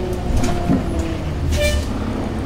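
Gillig transit bus running on the road, heard from inside the cabin: a steady low rumble with a faint whine, and a brief hissing tone about one and a half seconds in.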